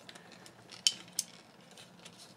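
Two light clicks of hard plastic parts on a Transformers Masterpiece MP-47 Hound figure being worked into place by hand, about a third of a second apart, a second in, over faint handling rustle.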